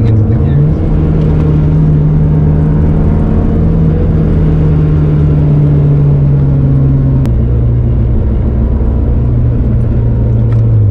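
A 2007 Acura TSX's K24 2.4-litre four-cylinder engine heard from inside the cabin, droning steadily while driving. Its note steps up in pitch about half a second in, holds, then drops back with a short click about seven seconds in.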